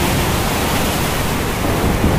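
Steady rushing noise with no tune or pitch, a noise effect on the end-screen outro's soundtrack, following on as the outro music's held notes stop.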